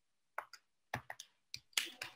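A string of short, sharp clicks, about six of them unevenly spaced over a second and a half, against near-quiet room tone.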